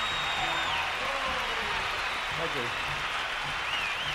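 Large arena audience applauding and cheering, with voices shouting through a steady wash of clapping.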